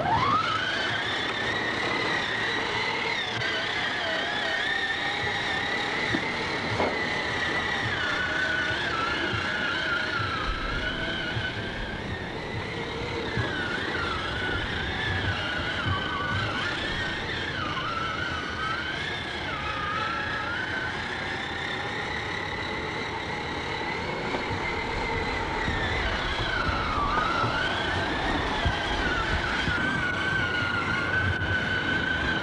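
Electric motor and gearbox of a child's battery-powered ride-on toy Jeep whining as it drives: the whine starts suddenly with a quick rise in pitch, then holds high, wavering and dipping again and again as the load changes on wet grass and water.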